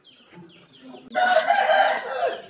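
A rooster crowing loudly, the crow starting about halfway through.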